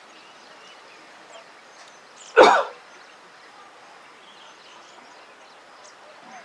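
A single loud cough about two and a half seconds in, over a quiet outdoor background with faint bird chirps.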